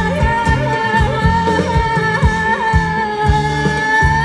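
Live Thai ramwong band music: a long held melodic note, a wavering, ornamented sung line, and a steady drum beat of about three strokes a second.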